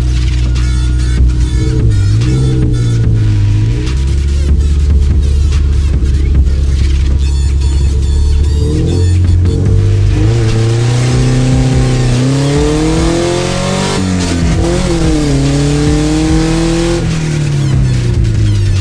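Subaru flat-four engine in a Zaporozhets with no muffler on its exhaust, heard from inside the cabin, revving hard through the gears on a standing-start acceleration run. The revs climb and fall back sharply at a gear change near 14 seconds, then climb and drop again near 17 seconds, while the tyres spin hard on wet asphalt.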